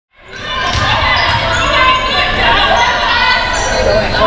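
Indoor girls' basketball game sound fading in: a ball bouncing on the hardwood court amid the crowd's and players' voices, echoing in a large gym.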